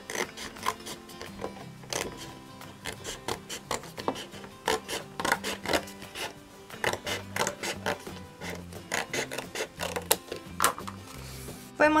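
Scissors cutting through colored cardstock, a long run of irregular crisp snips and rasps as the blades work along a line.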